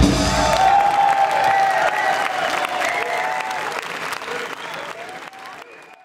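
Concert crowd applauding and cheering as a rock song ends, clapping with a few voices calling out over it, fading away toward the end.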